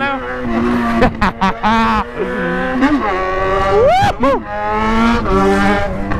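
Yamaha XJ6's inline-four engine running loud through its exhaust, revved up and back down in several quick blips, the biggest about four seconds in.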